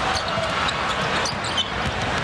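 Basketball being dribbled on a hardwood court under a steady din of arena crowd noise.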